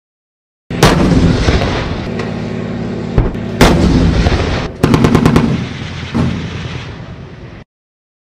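Tank firing on a gunnery range: heavy gunshots about a second in and again near four seconds, with a rapid burst of machine-gun fire around five seconds, over the steady running of its engine. The sound starts and stops abruptly.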